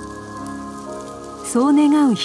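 Sustained background music. About one and a half seconds in, a loud voice holds a long drawn-out call that bends down in pitch at the end.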